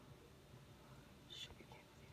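Near silence, with a brief faint whisper about one and a half seconds in.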